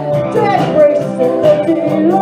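Live band playing a rock song: electric guitar and drum kit with a steady cymbal beat, and a woman singing over them.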